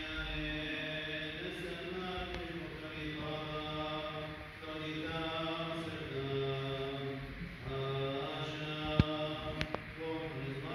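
Liturgical chanting in church, in long held notes that step up and down in pitch. A sharp click comes about nine seconds in, followed by two fainter ones.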